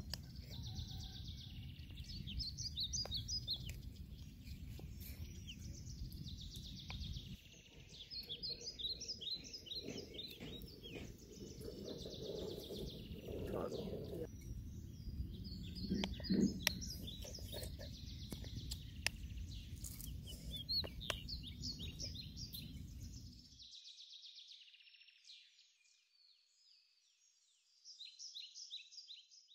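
Birds singing, a short chirping phrase repeated every few seconds, over a low outdoor rumble that cuts off near the end, leaving only the birdsong.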